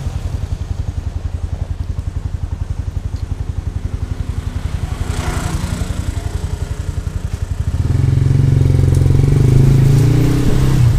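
Motorcycle engine running at low speed with an even, rapid pulsing beat, then getting louder about eight seconds in as the bike accelerates.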